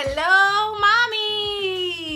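A woman's voice holding one long, high, wordless sung note, wavering slightly near the middle and sliding down as it fades out.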